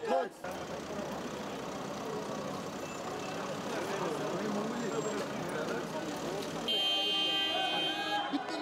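Outdoor street-protest crowd noise: many voices at once, mixed with vehicle horns. About seven seconds in, the sound cuts abruptly to a brighter mix with high steady tones.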